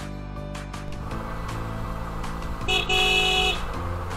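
Background music with a steady beat gives way about a second in to the road and engine noise of a moving motorcycle. Near the end a vehicle horn sounds once, a short steady honk that is the loudest sound here.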